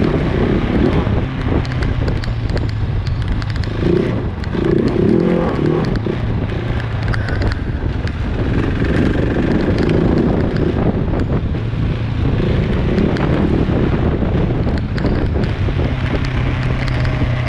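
Motorcycle engine running at a steady pace while riding on a snowy track, with wind on the microphone and tyres on snow and ice.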